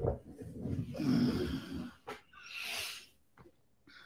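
A man's heavy breaths close to the microphone, a few breathy exhales in the first three seconds.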